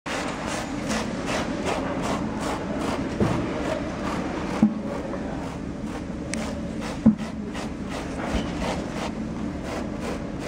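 Hand tool rasping and scraping polystyrene foam in a steady rhythm of roughly two and a half strokes a second, as a foam sculpture's face is shaped. Two brief, louder blips stand out about halfway through and about two-thirds through.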